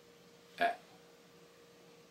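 A man's single short throat noise, like a small burp or grunt, about half a second in; otherwise near silence with a faint steady hum.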